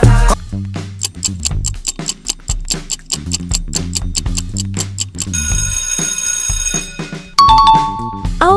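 Quiz countdown timer sound: a clock ticking at about four ticks a second over a bass beat for about five seconds. The ticking gives way to a ringing alarm-like tone lasting over a second, then a short two-note chime near the end, marking time up and the answer reveal.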